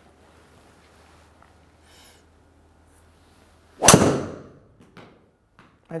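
A golf driver strikes the ball once, about four seconds in: a single sharp crack with a short ringing tail. It is a mis-hit struck about 20 mm out of the toe of the clubface.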